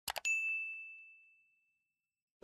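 Two quick mouse clicks followed by a single bright bell ding that rings on and fades out within about a second. It is the sound effect of a subscribe-button animation clicking the notification bell.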